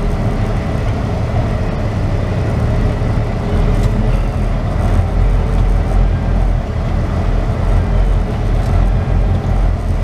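Semi-truck diesel engine running at low speed inside the cab as the truck rolls slowly and turns: a steady low rumble.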